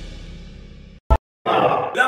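News-channel intro theme music fading out, then a brief silence with a single short pop, like an edit cut, about a second in. A man's voice starts near the end.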